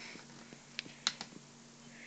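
A few light, sharp clicks on a laptop, clustered about a second in, as a slide is being edited.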